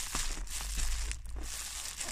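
Close rustling and crinkling handling noise with a few faint clicks over a low rumble.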